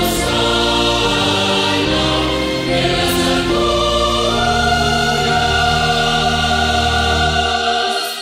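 A Pentecostal church choir sings a hymn in Spanish over low instrumental accompaniment, settling a little past halfway onto one long held chord.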